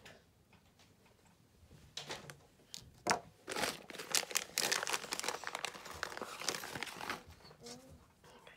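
A plastic bag of metal jump rings being picked up and handled, crinkling and rustling for several seconds from about two seconds in.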